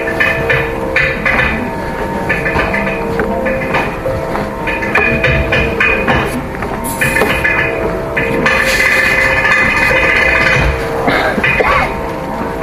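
Live Carnatic music: electric mandolins playing a melodic line of held and broken notes over rhythmic percussion and a steady drone.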